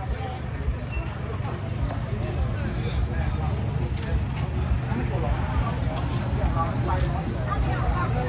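A steady low rumble of nearby vehicle engines running, with voices chattering in the background.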